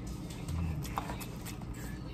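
Close mouth sounds of someone eating noodles: slurping them in and chewing, with several small clicks and a short low hum about half a second in.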